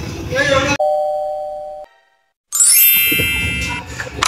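Edited-in chime sound effects: after a burst of laughter, a single clear ding rings and fades over about a second, then after a moment of dead silence a bright shimmering chime sweeps down from high notes to lower ones and rings out.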